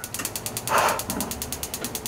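Gas stove burner's igniter clicking rapidly and evenly, with a whoosh about a second in as the gas catches and the burner lights.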